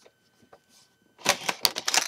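Handling noise: a quick burst of rapid clicks and rattles of hard plastic being moved about, starting about a second in and lasting under a second, after a few faint ticks.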